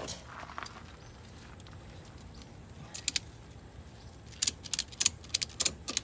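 A ratchet strap's ratchet buckle being worked to tension the strap: a couple of sharp metallic clicks about three seconds in, then a quick, uneven run of clicks through the last second and a half.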